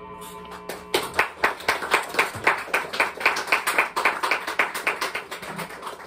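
Free-improvised drum-and-electric-guitar music: a quick, even run of sharp taps, about four a second, starts about a second in over faint lingering ringing tones and thins out near the end.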